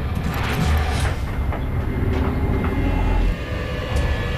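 Subway train running along the track: a steady low rumble with a few brief rattling hisses.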